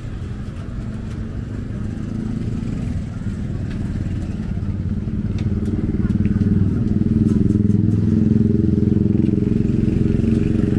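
Busy outdoor food-market ambience: a small engine runs steadily, growing louder about halfway through, under people's chatter and a few light clinks.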